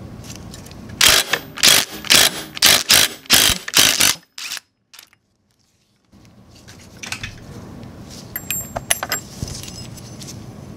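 Impact wrench hammering in about seven short bursts on the scooter's variator nut, loosening it. A few seconds later, light metallic clinks of small loosened parts being handled.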